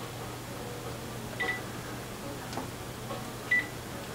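Quiet room tone with a steady low hum, broken by two faint, short, high-pitched blips about two seconds apart.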